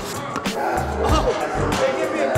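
Background music with a heavy, repeating bass beat.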